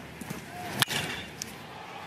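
Baseball bat striking a pitched ball a little under a second in: one sharp crack, over a faint crowd murmur in the stadium.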